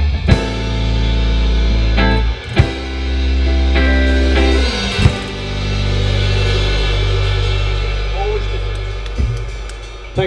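Live rock band with electric guitars, bass and drums ending a song: held chords punctuated by three sharp drum-and-chord hits, then a final chord left ringing and slowly fading out.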